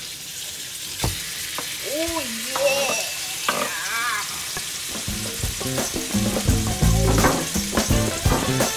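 Raw pork pieces sliding from a wooden chopping board into hot oil in a deep pot, sizzling steadily as they start to fry. Background music comes back in about halfway through.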